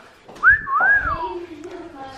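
A person gives a wolf whistle, about a second long: a quick upward slide, then a longer glide that rises and falls away.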